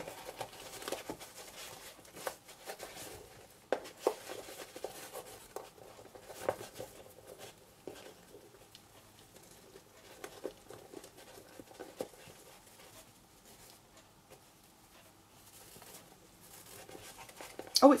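Soft rustling and scattered light taps as a seam binding ribbon is pulled and tied into a bow around a cardstock box.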